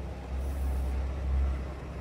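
Low, steady rumble of road traffic that swells through the middle, with a brief faint high hiss about half a second in.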